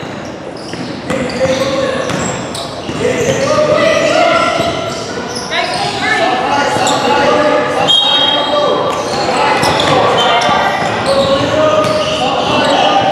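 Several voices talking and calling out, echoing in a large gymnasium, with a basketball bouncing on the hardwood court.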